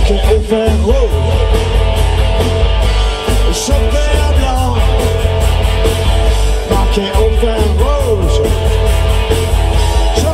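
Rock band playing live without vocals: electric guitar, bass guitar and drum kit, with lead notes that bend up and down over a driving beat with cymbals.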